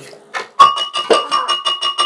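A black plastic spoon scraping and knocking rapidly around the inside of a glass blender jar of blended walnuts, about seven strokes a second. From about half a second in, the glass rings with a steady tone.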